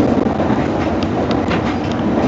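Steady running noise inside a moving Metrolink commuter train carriage, with a few faint clicks from the wheels over the track.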